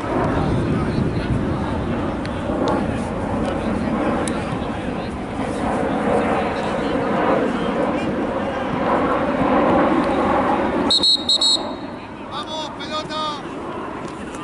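Rumble of wind on the microphone mixed with players' voices, then two short, sharp blasts of a referee's whistle about eleven seconds in, followed by a few calls and quieter surroundings.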